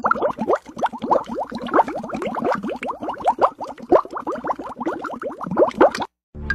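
A cartoonish rising 'bloop' sound effect repeated rapidly, about seven times a second, each one a quick upward sweep in pitch.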